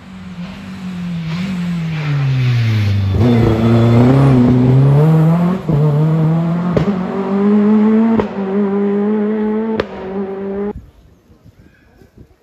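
A rally car's engine comes through loud, its revs falling as it slows, then climbing again as it accelerates away hard. Four sharp cracks break in as it pulls away, and the sound cuts off suddenly near the end.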